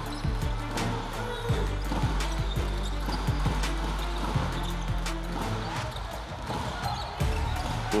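A basketball being dribbled on a hardwood court, a series of irregular bounces, over background music with a steady low bass.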